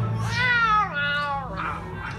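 Animated cat meowing in a film soundtrack: one long meow that rises and then slides down in pitch, over a low steady hum of background score, heard through cinema speakers.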